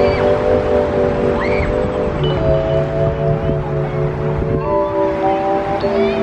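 Background music of sustained chords that change about every two seconds, over a steady rushing noise.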